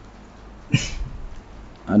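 Quiet room tone with a faint low hum, broken about three-quarters of a second in by a single short click and hiss close to the microphone; a man's voice starts right at the end.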